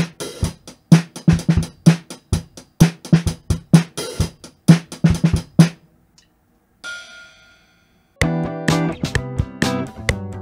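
Drum kit damped for a dead, muted indie sound (a t-shirt over the snare, a sleeping bag inside the kick, cloth on the hi-hats) playing a steady kick, snare and hi-hat groove; it stops about six seconds in. Near the end a mixed track with guitar chords over the drums comes in.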